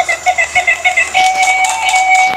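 Walking battery-operated toy rabbit playing a tinny electronic tune. A quick run of short repeated beeping notes is followed by one held note.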